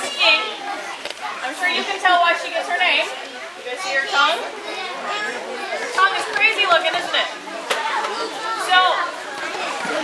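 Overlapping voices of a group of children chattering and speaking over one another.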